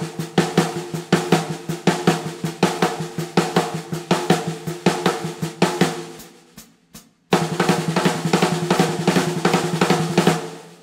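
A brass snare drum played with alternating single strokes (right, left, right, left) in an even, rapid stream, the drum's tone ringing under every stroke. The strokes die away and stop about seven seconds in, then start again at a faster rate.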